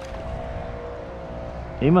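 Kayak's bow-mounted electric trolling motor humming steadily, a thin even whine over a low rumble of wind and water.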